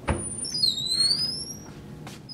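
A door clicks at the start, then squeaks on its hinges as it swings open: a few high, thin squeaks gliding up and down.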